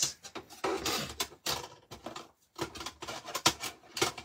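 Rustling and a run of light clicks and knocks from craft items being handled on a work table.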